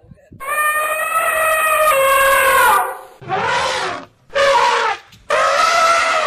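A loud yelling voice: one long held cry lasting over two seconds, then three shorter shouts.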